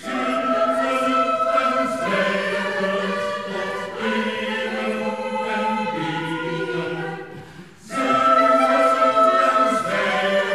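Mixed choir singing a cantata with orchestral accompaniment, sustained chords changing about every two seconds. A short break about seven seconds in is followed by a louder entry.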